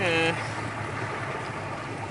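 A steady, low engine drone under an even background hiss, following the last word of a man's speech at the very start.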